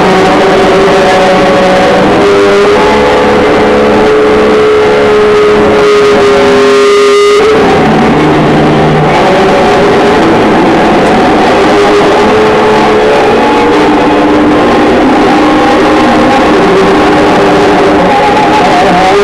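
Loud live noise music: a continuous wall of distorted, droning sound with sustained tones layered over a dense hiss. One steady tone is held for several seconds before the texture shifts about seven and a half seconds in.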